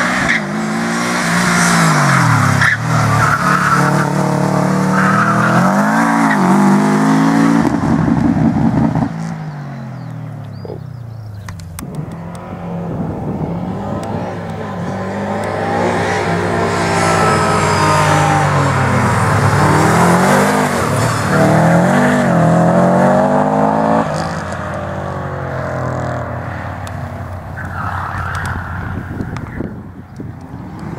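Subaru Impreza WRX's turbocharged flat-four engine revving hard and falling back again and again as the car is thrown between cones on an autocross course, with tyres squealing at times. The engine drops back and is quieter for a few seconds about a third of the way in.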